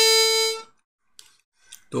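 Harmonica holding the last note of a played melody phrase, which stops about a third of the way in. A short pause follows, and a spoken word begins at the very end.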